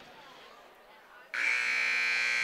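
Gymnasium scoreboard buzzer sounding as the countdown clock reaches zero: a loud, steady, high-pitched buzz that starts suddenly about a second and a half in.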